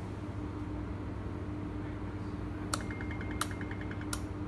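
Powered Nice Robus gate-motor control unit giving a steady low hum while it runs its bus search, then three sharp clicks about 0.7 s apart near the end with a quick run of faint ticks between them.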